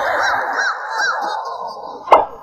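Goose-like honking: a run of about four short honks over a breathy noise, fading out during the second half.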